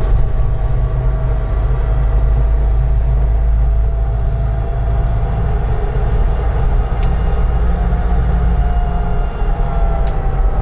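Steady low rumble inside the cab of an electric-converted Puch Pinzgauer climbing uphill in third gear, with a faint whine from the transmission slowly rising in pitch. The electric motor itself is not heard. A single sharp click comes about seven seconds in.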